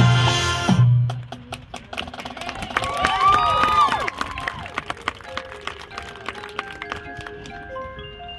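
Marching band music: the full band with heavy drum hits cuts off about a second in, giving way to a quieter passage of sharp percussion clicks and a brief sliding, wavering high sound near the middle. In the last few seconds the front ensemble's mallet keyboards play ringing notes that step up and down in pitch.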